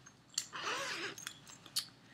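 Zipper of a fabric project bag being pulled open: a short rasp with a click from the zipper pull before and after.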